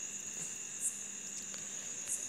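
A steady, high-pitched background whine over faint hiss, with a weaker, lower steady tone beneath it.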